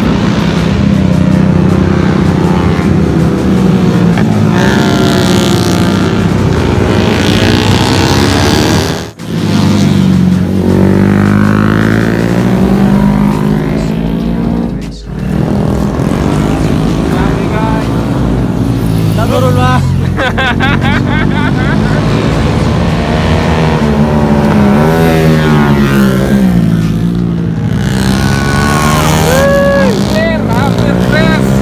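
Motorcycle engines running on a racing circuit, their pitch rising and falling as the bikes rev and pass, mixed with voices.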